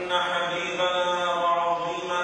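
A man chanting in Arabic into a microphone, holding long notes at a steady pitch with brief breaks between phrases.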